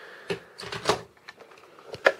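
A few short knocks and clicks as a heavy old model-railway transformer in a plastic case is picked up and handled.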